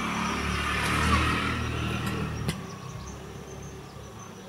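A motor vehicle passing by: its engine hum and road noise swell to a peak about a second in, then fade away, with a single click near the fade.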